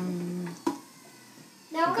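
Centrifugal juicer's motor running with a steady whine, then cutting off about half a second in, followed by a single click.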